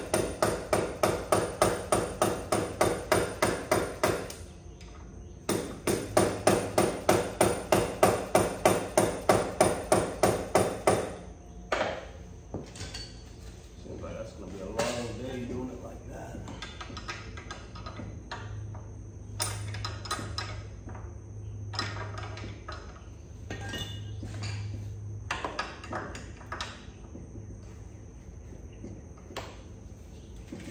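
A hammer striking metal in quick, even taps, about four a second, in two runs of several seconds each with a short break between, each tap ringing briefly. After that come scattered lighter taps and clinks of tools on metal.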